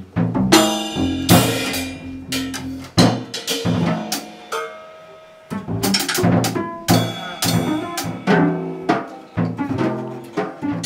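Live free jazz from double bass and drum kit: plucked bass notes under irregular drum and cymbal hits. The playing thins out about halfway through, then the drums come back in.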